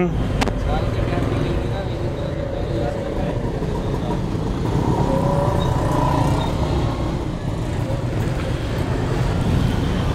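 Steady street traffic noise: a continuous low rumble of passing motorcycles and other vehicles.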